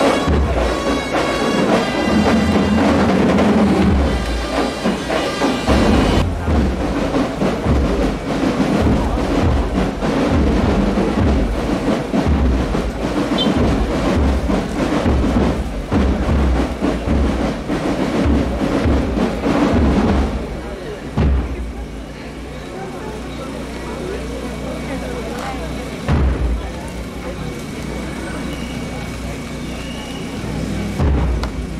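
A procession band's brass march dies away in the first few seconds, leaving slow, steady bass-drum beats over a loud, chattering crowd. About two-thirds of the way through the drumming stops, and a quieter crowd murmur remains.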